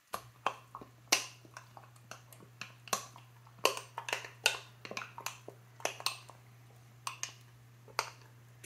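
Metal spoon clinking against the inside of a glass jar while stirring: a run of irregular, sharp clinks, roughly two a second.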